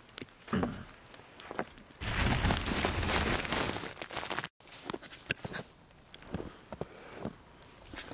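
Handling noise on the camera's microphone: scattered small clicks, and a loud rustling about two seconds in that lasts about two and a half seconds and cuts off abruptly.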